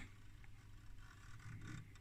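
Faint handling noise, with a few light ticks and rubs, as a circuit board fitted with metal shield covers is turned in the hand.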